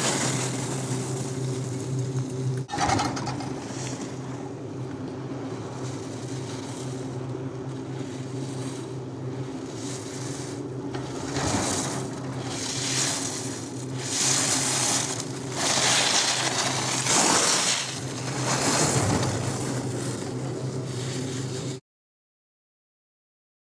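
Skis scraping and swishing on hard-packed snow as a skier turns through slalom gates, the swishes coming in a regular run about one every second and a half in the second half, over a steady low hum. The sound cuts off abruptly just before the end.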